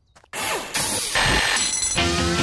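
A brief silence, then a loud, noisy cartoon transition sound effect with a falling tone early on and high ringing tones near the end.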